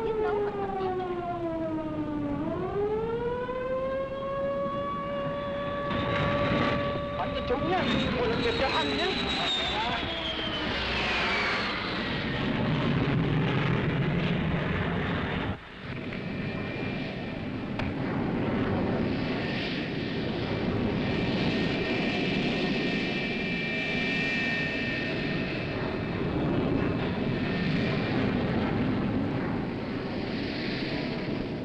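Air-raid siren wailing: its pitch falls, rises and holds for a few seconds, then slides down again and fades over the first third. After an abrupt cut near the middle comes a steady rushing noise with a thin high whine.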